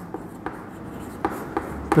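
Chalk writing on a chalkboard: a few short taps and scratches as a number and the first letters of a word are written.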